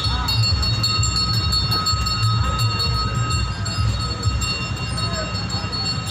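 Busy street background: a low, uneven rumble with voices in the distance and a few thin steady high tones.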